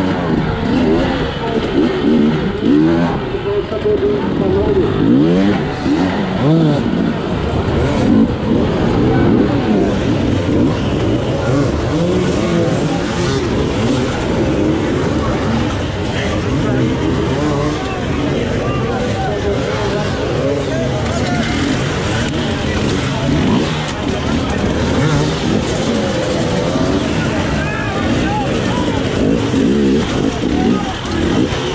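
Two-stroke enduro motorcycle engine heard close up, revving up and down without pause as the bike is ridden hard over rocks, the revs swinging most in the first ten seconds or so.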